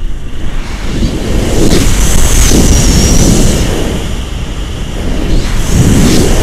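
Strong wind buffeting the microphone of a pole-mounted action camera on a paraglider in flight: a loud, gusty rumble with a faint high whistle that glides up and down. It eases for a moment about two-thirds of the way through, then comes back.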